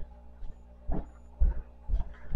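Two dull, low thumps, about a second and a half and two seconds in, from handling or bumping something close to the microphone. A single spoken word comes just before them.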